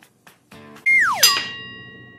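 Sound effect: a tone that slides quickly down in pitch, then a bright metallic ding that rings on and fades, over quiet background music.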